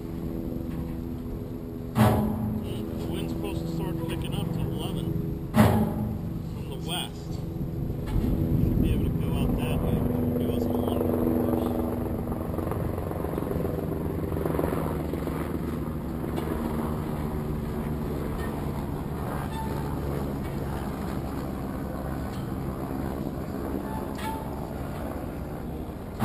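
A motor running steadily with an even hum that swells for a few seconds about eight seconds in. Two sharp knocks come about two and five-and-a-half seconds in.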